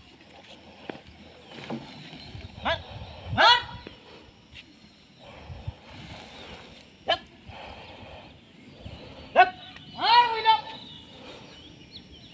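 A mahout's short, sharp shouted commands to a working elephant, several single calls a few seconds apart. The loudest comes about three and a half seconds in, and a longer call falls in pitch near the ten-second mark.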